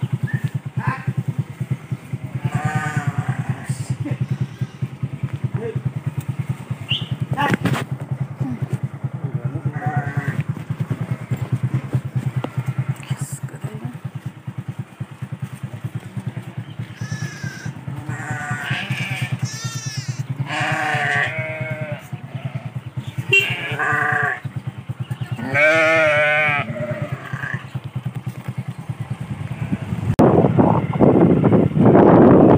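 A flock of sheep and goats bleating now and then, with a few wavering calls early and a louder run of them in the second half. Underneath is the steady low throb of an engine running at low speed.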